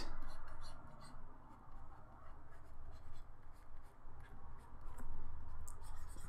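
Stylus nib scratching and rubbing across a Wacom Intuos graphics tablet in quick brush strokes, with a few light ticks of the pen.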